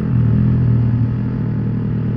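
Yamaha R15's single-cylinder engine running at a steady pitch while the bike cruises along, heard from the rider's position.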